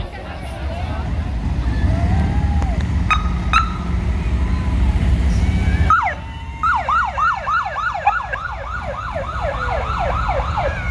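Emergency vehicle siren: two short chirps about three seconds in over a low rumble, then, after a cut about six seconds in, a rapid yelp siren sweeping up and down about three to four times a second.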